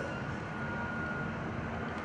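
Steady low background rumble with a faint, thin steady high tone above it, unchanging throughout; no distinct events.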